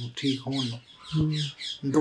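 A bird chirping in quick repeated high notes behind brief bits of a man's voice.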